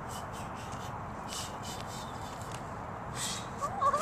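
Padded nunchucks swung through the air, making a few faint swishes over steady outdoor background noise. A child's voice rises and falls near the end.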